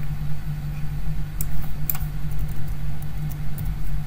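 Steady low background hum, with two light computer mouse clicks about a second and a half and two seconds in.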